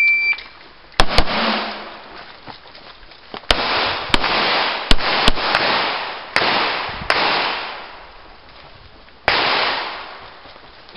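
An electronic shot timer gives one short beep, then a pistol fires about ten shots, two in quick succession about a second in and the rest spread out, each shot trailing a long echo.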